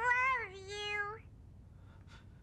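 A single high-pitched, wavering cry that glides up and down and then holds level, ending a little over a second in.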